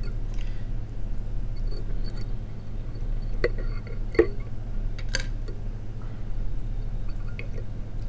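Steady low electrical hum, with a few faint clicks from fly-tying tools being handled at the vise, about halfway through.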